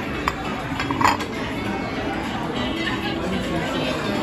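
Dining-room background of a busy buffet restaurant: continuous chatter with background music, and two sharp clinks of metal and dishes, about a third of a second and a second in, the second the louder.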